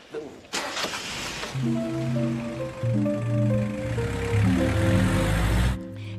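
A short scene-change music cue of held notes stepping up and down, laid over the noise of the builders' Nissan Vanette van starting and driving off. The noise comes in suddenly about half a second in, and both cut off together just before the end.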